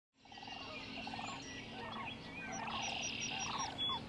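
Sandhill cranes calling: a run of short rattling calls, one about every half second, fading in at the start, with fainter higher bird chirps above them.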